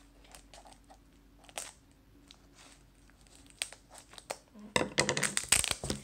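A few sharp clicks of scissors cutting into plastic packaging, then, from about five seconds in, loud crinkling and rustling of the plastic wrap as it is torn and pulled open by hand.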